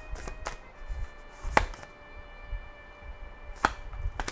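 Tarot cards being handled, with a few sharp snaps and taps of cards against the deck. The loudest snap comes about one and a half seconds in.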